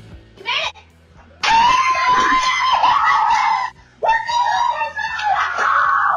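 Screams of joy from football fans celebrating a last-second play: two long, loud held screams, the first starting about a second and a half in and the second after a short break about four seconds in.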